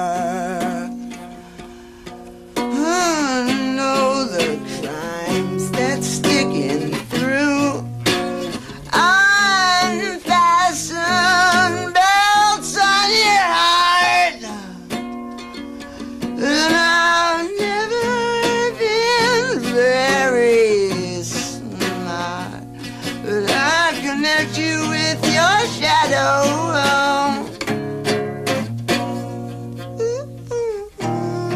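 A man singing in a wavering, sliding voice while playing an acoustic guitar, with short guitar-only stretches between the sung lines.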